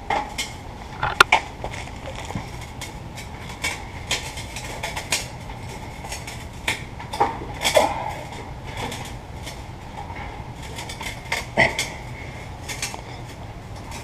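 Brass sousaphone bell being fitted onto the instrument's bell receiver: scattered light metallic clinks and scrapes of brass against brass, with a few sharper knocks.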